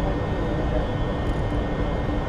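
Military jet aircraft flying past, a steady jet-engine noise with faint steady tones running through it.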